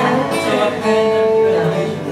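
Acoustic guitar being played, a few notes ringing out and sustaining for about a second.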